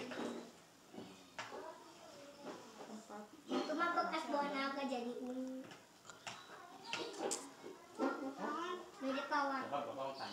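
Young children's voices talking in short stretches, with a few light clicks in between.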